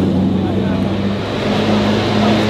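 A car engine idling steadily, its pitch shifting slightly partway through, over background crowd chatter.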